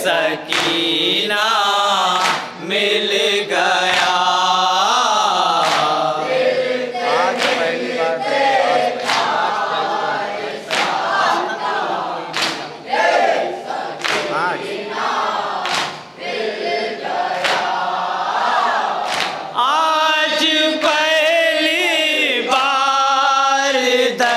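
A group of men chanting a nauha, a Muharram lament, in chorus through a microphone and PA. The chant is punctuated by sharp chest-beating (matam) slaps at a steady beat of roughly one a second.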